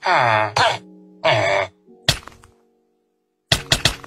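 A low human voice groaning "uuuh" in three drawn-out, wavering sounds over a held musical chord. It is followed by a single knock about two seconds in and a quick run of sharp clicks near the end.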